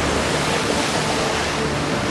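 Steady rush and splash of water as humpback whales lunge up through the surface with mouths open, feeding.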